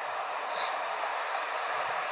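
Steady running noise of a train on the elevated railway line, with a short hiss about half a second in.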